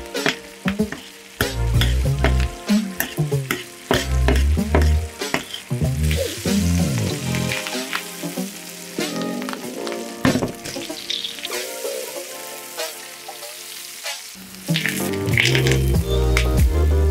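Butter sizzling in a steel frying pan as filet mignon steaks are spoon-basted, with sharp clinks of metal utensils against the pan, over background music.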